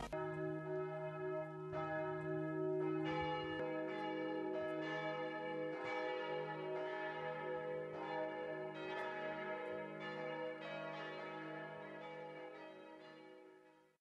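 Church bells ringing in a peal: several bells struck in turn, about one stroke a second, their long tones overlapping into a steady hum. The ringing fades away near the end.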